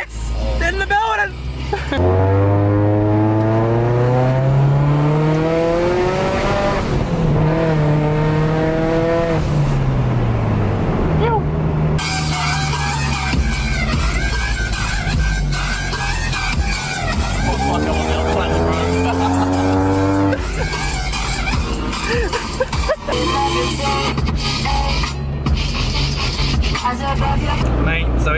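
Car engine heard from inside the cabin, rising in pitch for a few seconds as the car accelerates, then easing off, then rising again.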